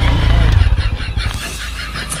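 Small motorcycle engine running with a low rumble, which fades out about a second and a half in, leaving faint ticks and clicks.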